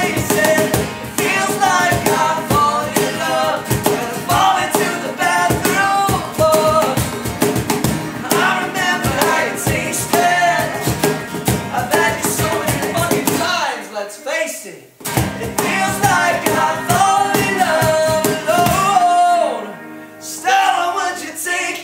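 Live acoustic rock band: a male lead voice singing over strummed acoustic guitars, an electric guitar and a cajón. The music briefly drops almost out about two-thirds of the way through, then the singing comes back in.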